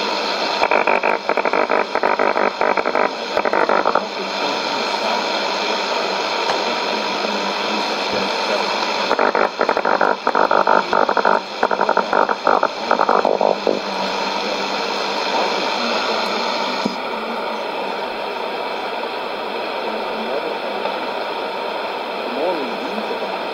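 Shortwave broadcast received on a Sony ICF-2001D portable: steady static hiss, with a sermon talk breaking through faintly in two crackly stretches. The hiss changes near the end as the receiver is retuned from 11660 to 12005 kHz.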